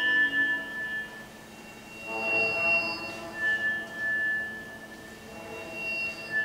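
Live contemporary chamber-ensemble music: sparse, long-held high pure tones that overlap and pass from one pitch to another, with a swell of lower sustained notes about two seconds in.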